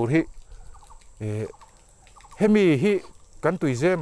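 Mostly a man's voice, talking in short phrases with a pause. During the pause come two faint runs of quick, short calls, like a bird in the background.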